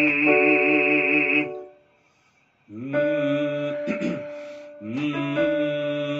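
Electronic keyboard playing sustained chords for a vocal warm-up, stopping about a second and a half in and starting again a second later on a new chord.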